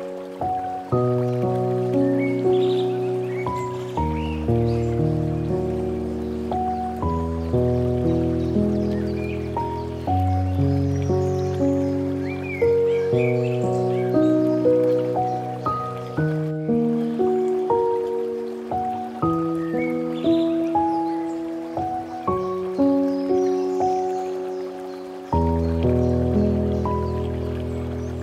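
Slow, calm solo piano music: soft chords and single notes struck about every half second to a second, each ringing and fading, with deep bass notes entering and dropping out.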